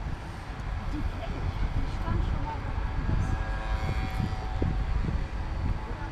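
Low, steady rumble of distant engines, with faint steady tones coming in about halfway through and dying away before the end.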